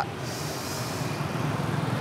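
Street traffic noise: a steady background hum of passing vehicles, with a brief hiss in the first second.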